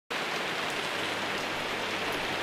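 Steady rain falling on a garden and wet patio tiles.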